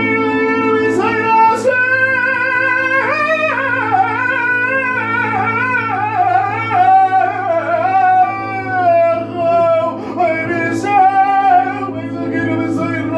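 A man singing a cantorial (chazzanut) melody in a high voice, with winding, ornamented runs and vibrato, over a sustained keyboard chord.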